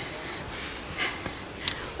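A person's effortful breath about a second in, then a short knock on wooden planks near the end, as they clamber down steep driftwood steps.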